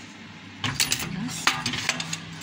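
A rapid run of sharp metallic clicks and clatter from a foot-pedal stapling machine that joins the corners of wooden stretcher frames, its pedal and pressing head being worked as the frame corner is set in place. It starts about half a second in.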